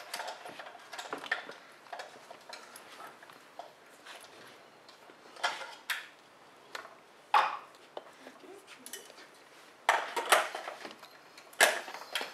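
Scattered clicks, clinks and knocks of metal lighting gear being handled as a studio light is set up on its stand, with several sharper clanks in the second half.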